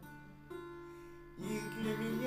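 Instrumental waltz accompaniment between sung lines. A held chord fades, a new note comes in about half a second in, then plucked guitar notes and chords enter about a second and a half in.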